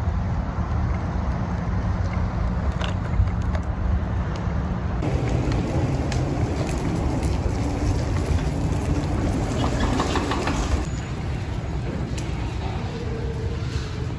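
Steady low outdoor rumble of road traffic and wind noise in a parking lot, changing in texture about five seconds in and easing slightly from about eleven seconds.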